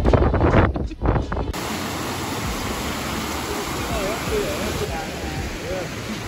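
Wind buffeting the microphone in gusts, then from about a second and a half in, a rocky stream cascading over small falls with a steady rush of water.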